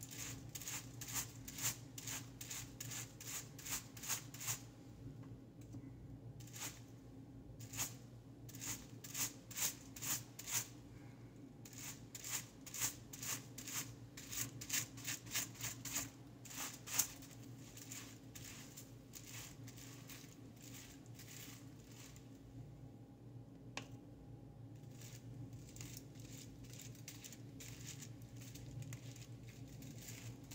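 Tint brush stroking lightener paste onto a section of hair over aluminium foil: a quick run of short, wet brushing strokes with some foil crinkle, coming thick and fast at first and thinning out after about halfway.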